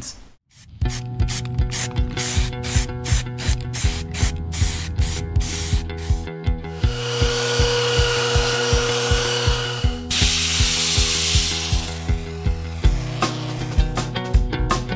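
Handheld belt sander running on a pine board, starting about halfway through and stopping about a second before the end, over background music with a steady beat.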